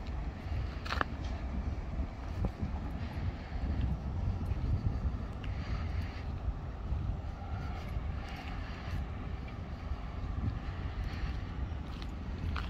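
BMW 335d's twin-turbo straight-six diesel idling steadily, a low rumble heard from outside the car, with a little wind on the microphone.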